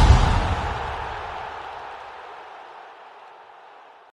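End-card sound effect: a deep boom with a noisy swell, already under way, ringing out and fading steadily over the few seconds.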